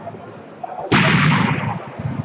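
A volleyball struck hard close by: one sharp, loud bang about a second in that rings on briefly in the reverberant gym hall.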